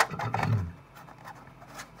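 A soft polyethylene building miniature being pressed into the holes of a plastic game board: a sharp plastic click at the start, then about half a second of rubbing and handling, then a few faint taps.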